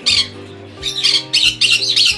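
Parrots squawking with harsh, short screeches: one near the start and a quick run of three in the second half, over background music with steady low notes.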